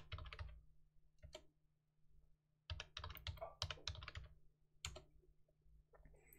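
Computer keyboard typing at a faint level as a password is entered and then entered again to confirm it. A few keystrokes come first, then a quick run of keys starting about three seconds in, then a single key press near the end. A faint steady low hum runs underneath.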